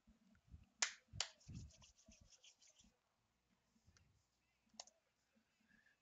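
Near silence, broken by two faint, sharp clicks about a second in and a fainter tick near the end.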